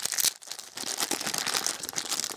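Plastic packaging crinkling in the hands, a dense run of small crackles, as a plastic toy part is handled.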